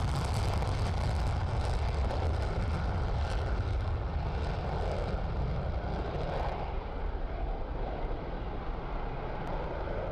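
F-15E Strike Eagle's twin jet engines in afterburner on takeoff: a steady rushing jet noise that loses its hiss and eases slightly after about six and a half seconds as the jet climbs away.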